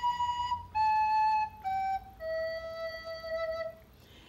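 Soprano recorder playing a descending four-note phrase, B, A, G, E, each note clean and steady, ending on a long-held low E.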